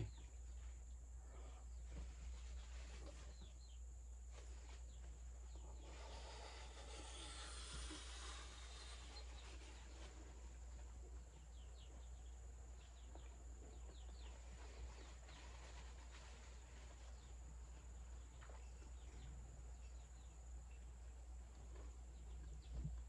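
Near silence with faint bird chirps and a steady high whine. A soft rustle comes about six to nine seconds in.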